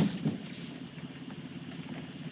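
Steady low rumble of a truck on the move, heard from inside its enclosed cargo compartment.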